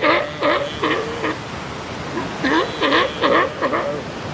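Galápagos sea lion giving short, pitched calls in two quick runs, about four and then six, each call dipping and rising in pitch.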